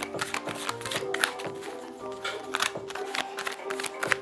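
Soft background music with steady held notes, over the repeated flicks and slaps of tarot cards being shuffled and handled.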